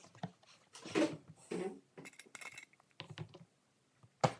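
Plastic energy-drink bottle and its push-down powder cap being handled and pressed: a string of short hard-plastic clicks, scrapes and rattles.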